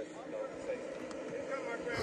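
Indistinct voices from a police documentary played through a tablet's small speaker, with a faint outdoor street background under them.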